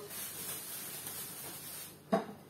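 Thin plastic bag rustling steadily as fish is pushed and arranged inside it, a soft hiss that stops near the end.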